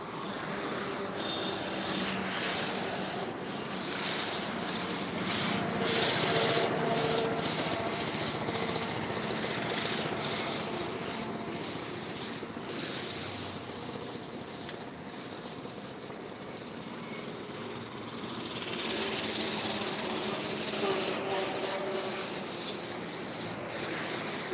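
Steady vehicle and road noise, with no sharp knocks or bangs.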